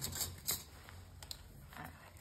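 Light rustling and handling of cardstock die-cut pieces on a cutting mat, with the padded nylon sleeve of a puffy jacket brushing past: a few short scratchy rustles in the first half second, then a single small tick.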